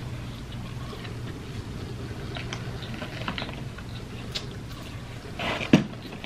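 Close-miked chewing of fried fast food: scattered soft crunches and wet mouth clicks, with a sharper smack near the end.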